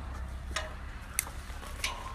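Three short sharp knocks about two-thirds of a second apart, from a goat standing on a plastic tub against a wooden fence and hanging bucket, over a low steady rumble.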